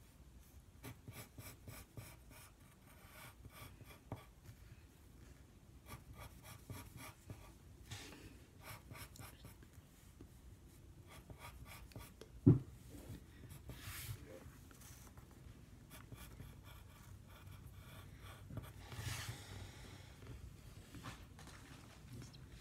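Pencil strokes scratching on paper as a drawing is shaded, in quick runs of short strokes with brief pauses. One sharp thump about halfway through.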